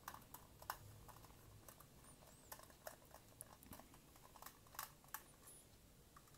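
Scattered, faint small clicks and ticks of a precision screwdriver bit turning the tiny screws in the end cap of an aluminium Transcend StoreJet 25S3 drive enclosure.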